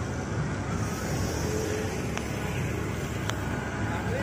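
Steady rumble of road traffic, with two faint clicks about two and three seconds in.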